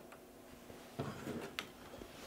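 Faint handling sounds from plastic hose and filter fittings: a soft knock about a second in and a sharp click near the end, over a faint steady hum.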